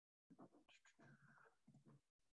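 Near silence, with a few faint, short sounds.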